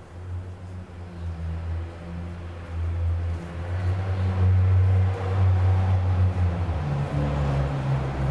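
Low rumble of a motor vehicle's engine running nearby, growing louder through the middle and shifting to a slightly higher pitch near the end.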